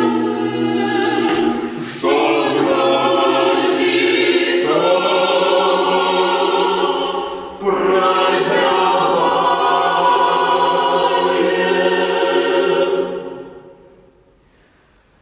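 Mixed chamber choir singing a cappella in sustained chords, with short breaks between phrases about two seconds and seven and a half seconds in; the last chord fades away near the end.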